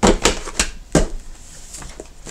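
Spiral-bound paper planners being handled and set down on a hard table: about four quick knocks and clacks in the first second, then a softer rustle of paper.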